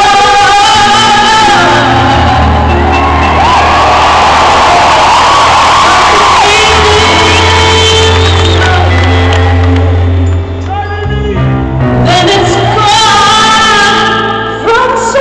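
Live soul-pop band in a large arena, heard from the audience: a woman sings held, gliding lead notes over keyboard and steady bass notes, with shouts from the crowd. The loudness dips briefly about ten seconds in, then the band carries on.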